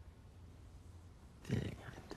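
Quiet room tone, then about one and a half seconds in a short, low vocal sound from a person, a murmur or grunt without words.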